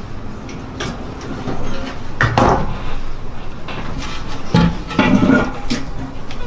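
A few knocks and clatters mixed with crinkling, as cooking gear and a wrapped package are handled on a counter.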